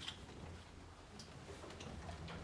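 A sharp click, then a few faint ticks and taps: small handling noises in a quiet room.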